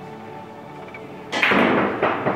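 Steady background music; past halfway a sudden loud clack of a Russian billiards shot, the cue ball struck and hitting the object balls, lasting about half a second.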